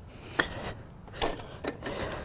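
BMX bike rolling over concrete: faint rolling noise with a few scattered clicks and knocks from the bike, the sharpest about half a second in.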